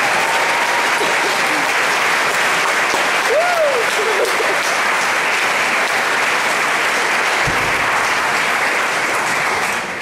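Audience applauding steadily, with a short voice rising and falling over the clapping about three and a half seconds in. The applause dies away at the very end.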